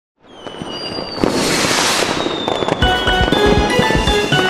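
Cartoon firework-rocket sound effect: a high whistle that slides slightly down, then a loud fizzing hiss of sparks. Nearly three seconds in, music with a steady beat starts.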